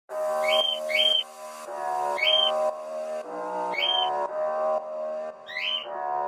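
Instrumental song backing of held chords, with a parrot's chirps dubbed in where the singing voice would be: five short rising chirps spread through.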